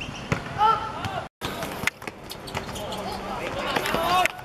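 A football being kicked on an outdoor hard court, giving several sharp knocks, with players shouting over it. The sound drops out completely for a moment about a third of the way in.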